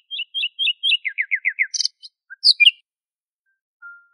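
Birdsong: a run of short, high chirps, about four a second, then five quick down-slurred notes and a few sharper calls. It stops about three seconds in.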